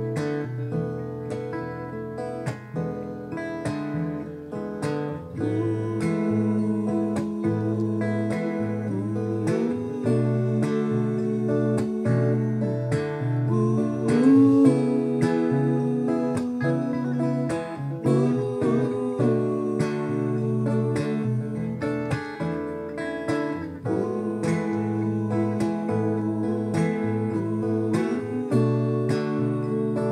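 Two acoustic guitars playing a gentle song, strummed and picked together, with a male voice singing a melody over them from about five seconds in.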